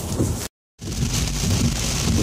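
Heavy rain falling on a car's roof and windscreen, heard from inside the cabin as a steady hiss over the low rumble of the car on the road. The sound cuts out completely for a moment about half a second in, then comes back.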